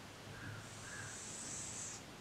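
Dry-erase marker drawing one long stroke on a whiteboard: a faint, steady scratchy hiss that starts about half a second in and lasts over a second.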